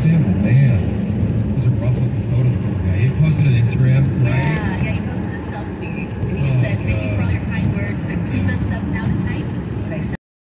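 A voice talking on the car radio inside a moving car, over a steady hiss of tyres on the wet road.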